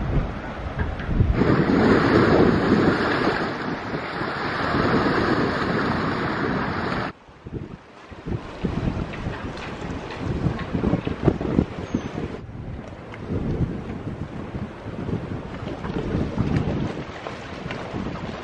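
Wind buffeting the microphone over the wash of sea water in a harbour. It is loud for the first several seconds, drops off suddenly about seven seconds in, and then comes and goes in gusts.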